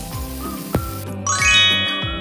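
A bright, sparkly chime sound effect that sweeps up quickly and rings on, about a second and a half in, over background music with a steady beat. For the first second a frying sizzle hisses under the music, cutting off suddenly.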